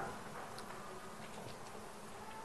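Quiet room tone of a hall: a faint even hiss with a faint high thin hum and a few soft ticks.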